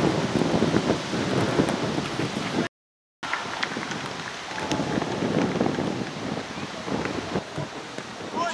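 Steady noisy rumble and hiss of outdoor pitch-side ambience, typical of wind on the camera microphone. The sound cuts out completely for about half a second around three seconds in.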